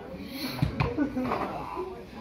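Voices calling out across a football pitch during play, with two dull thumps close together about half a second in.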